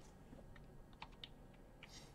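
Near silence broken by three faint clicks in the second half, like computer keys being pressed, as the presentation moves to the next slide.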